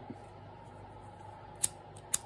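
Faint steady room hum, with one sharp click about a second and a half in as the tools are handled.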